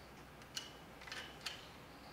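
Three faint clicks as a bicycle brake lever's handlebar clamp is tightened and the lever is handled.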